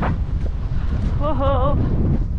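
Wind rumbling on the microphone of a camera riding on a cantering horse, with a sharp knock right at the start. A short wavering call sounds about a second into the rumble and lasts about half a second.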